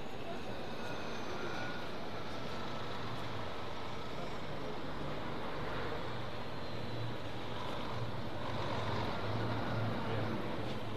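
A motor vehicle engine running with a steady low rumble.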